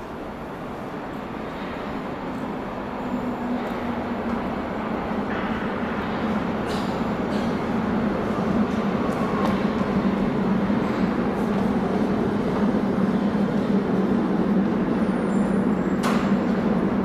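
Stadtbahn light-rail train running through the tunnel and into an underground station, growing steadily louder as it approaches, with a low hum that comes up about halfway through.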